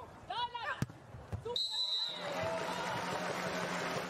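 A beach volleyball rally: a player's short shout, then a sharp smack of the ball struck about a second in. A brief high whistle follows at about a second and a half, and then a steady wash of crowd noise as the point ends.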